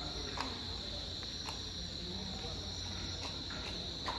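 Crickets chirring in a continuous high-pitched drone at night, over a steady low hum, with a few faint clicks.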